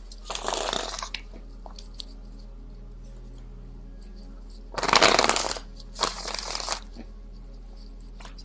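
A deck of tarot cards being shuffled by hand in three short bursts: one near the start, then two close together past the middle.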